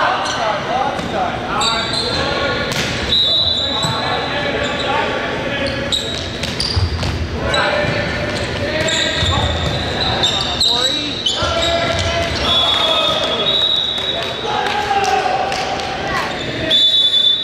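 Indoor volleyball play in an echoing gymnasium: players' and spectators' voices, sneakers squeaking on the hardwood court, and the ball being struck several times.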